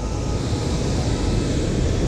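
Steady rushing of river water pouring through a lock's gates, an even noise with a deep low rumble.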